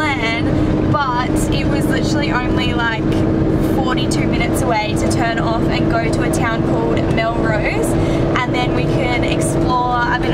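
Toyota Coaster bus driving on the road, heard from inside the cabin: a steady engine and road drone with a steady hum, under a woman talking throughout.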